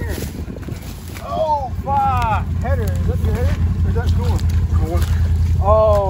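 Can-Am Renegade 1000 XMR ATV's V-twin engine running with a steady low rumble that gets louder about a second in, with voices calling out over it several times. A coolant line has blown off the machine, which is steaming.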